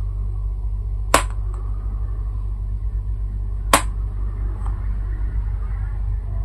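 Two sharp clicks about two and a half seconds apart, from a small hard object held in the hand being tapped on a spread of tarot cards. A steady low hum runs underneath.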